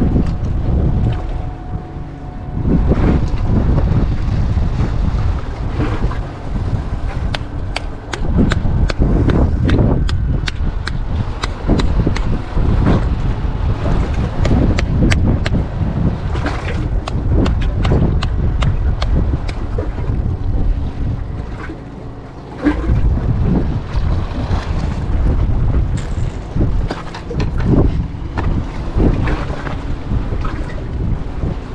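Wind buffeting the camera microphone in a deep, gusting rumble, with a run of sharp clicks through the middle.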